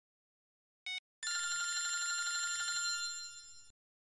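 Mobile phone ringing with an electronic ringtone: a short blip about a second in, then a steady ring that fades away and stops just before the end.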